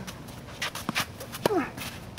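Tennis rally on a hard court: sharp ball strikes off strings and court, with shoes scuffing on the surface. About a second and a half in, a player lets out a short grunt that falls in pitch as he hits.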